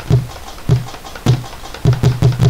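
Sampled tambora drum hits, the gaita zuliana drum, triggered from MIDI drum pads: four low strokes, each with a sharp click on top, about every 0.6 seconds.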